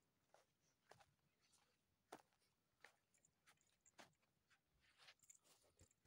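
Near silence, with about a dozen faint, irregular clicks and ticks scattered through it.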